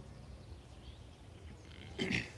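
Faint woodland ambience: a few short, high bird chirps over a low, steady rumble.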